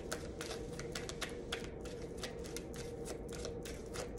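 A deck of tarot cards being shuffled by hand, overhand style: the cards slide and flick against each other in quick, irregular clicks, several a second.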